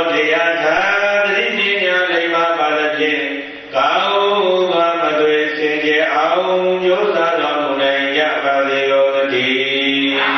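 A Buddhist monk chanting into a microphone in long, drawn-out melodic phrases, pausing for breath about four seconds in.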